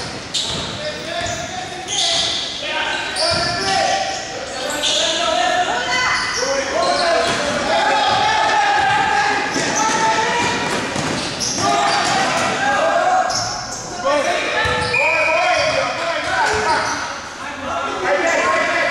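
Indoor basketball game: the ball bouncing on the court with players' shouts and calls, echoing in the gymnasium hall.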